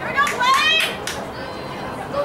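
Children's voices shouting in high, rising calls during the first second, over a steady babble of crowd chatter.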